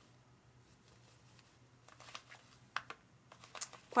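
Faint rustling and a few soft clicks in the second half, from a skein of cotton yarn in a paper label band being turned over in the hands.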